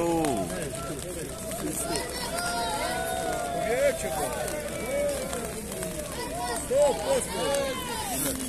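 Several spectators' voices calling and shouting over one another, in short rising and falling calls, with one louder call near the end.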